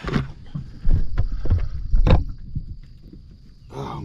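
A few sharp knocks and thumps with a low rumble of handling noise from moving about in a small fishing boat, over a faint steady high whine.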